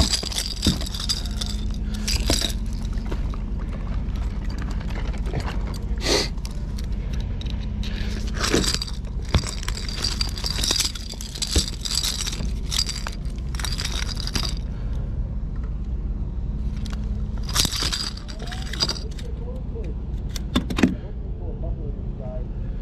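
Metal fishing tackle clinking and rattling, on and off: a fish-lip grip, pliers and a lure's treble hooks knocking together as a hook is worked out of a striped bass's mouth. A steady low rumble runs underneath.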